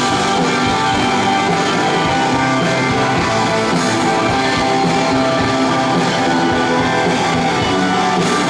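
Live rock band playing: electric guitars over bass and drum kit, loud and continuous.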